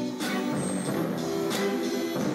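Music playback, with plucked-string notes and strums, running through a DiGiCo console's DiGiTube tube emulation with its drive and output turned up for saturation.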